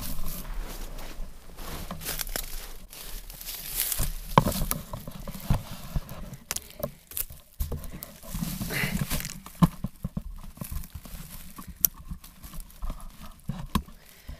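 Handling noise from a camera being picked up, carried and repositioned through dry oak brush: rustling, with irregular knocks and clicks against the microphone and the brushing of dry branches.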